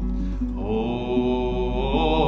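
A man singing a long held note to his own acoustic guitar accompaniment, the voice rising onto the note shortly after the start, in a room with vaulted ceilings that give it a lively echo.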